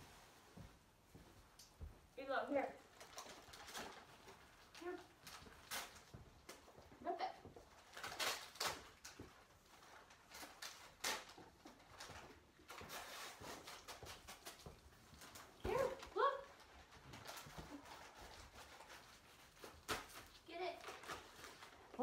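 Wrapping paper crinkling and tearing in short, scattered crackles as a dog rips into a present, with a few brief exclamations from a person.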